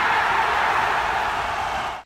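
Steady rushing noise with no clear tones, fading away near the end.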